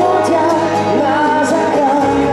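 A male vocalist sings a pop song into a handheld microphone. His voice glides up and down over a sustained instrumental backing of held chords.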